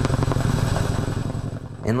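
Tandem-rotor helicopter lifting a slung pickup truck on a long line: a steady, rapid chop of the rotor blades over a low engine drone. A man's voice begins near the end.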